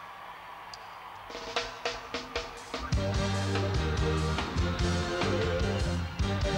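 A live reggae band with a chamber orchestra starts a song: after a brief quieter moment, a few sharp drum hits come in about a second in, then the full band with heavy bass enters about three seconds in and plays on with a steady beat.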